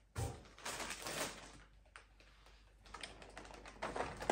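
Plastic food packaging being handled on a tabletop: scattered short rustles and light taps, quieter in the middle and busier again near the end.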